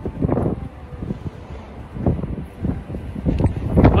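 Gusty wind buffeting the microphone, over the rush of a rough storm sea breaking on the shore.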